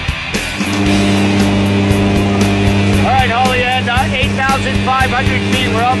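Steady drone of a jump plane's engines and propellers heard inside the cabin, setting in about a second in as rock music with drums cuts off. Voices talk over the drone from about halfway.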